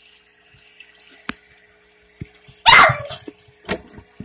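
A dog barks once, loudly, nearly three seconds in, with a few shorter sounds after it. Underneath runs a steady faint hum with water noise from the aquarium.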